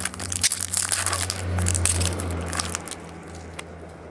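A foil trading-card pack being torn open and crinkled by hand: a dense run of sharp crackles over the first three seconds, easing off near the end.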